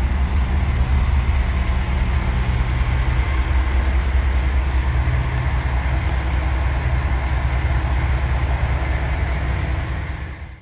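Steady low rumble of street traffic and engines, with a fainter hiss above it, continuous and without distinct passes.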